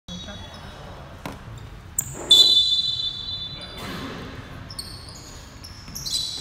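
A referee's whistle blows one long, shrill blast starting a little over two seconds in, the loudest sound here. Shorter high squeaks and a low hubbub of voices fill the hall around it.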